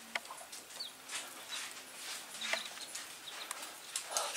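Young chicks peeping faintly: a few short, high chirps scattered through the quiet.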